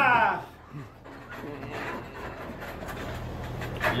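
A shout dies away, then for about three seconds only quieter breathing and straining from armwrestlers locked in a match, with a few light clicks and a low hum near the end, before a rising shout begins.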